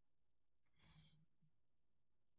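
Near silence, broken about a second in by one short, faint sigh from a person.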